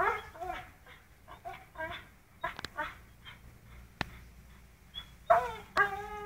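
Pit bull whining and whimpering in short, pitch-bending cries while it hangs by its jaws from a rope, with a few sharp clicks in between; the cries grow louder near the end.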